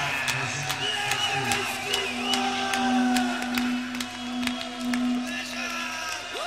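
A live punk gig between songs: an electric guitar holds one steady note from about a second and a half in, with scattered clicks and a brief wavering high tone. Voices from the stage or crowd sound over it.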